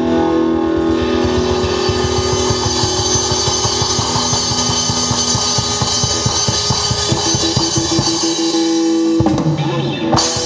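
Live rock band playing electric guitar, electric bass and drum kit. Fast, even drum hits run through most of it over held guitar and bass notes, and the music changes abruptly about nine seconds in.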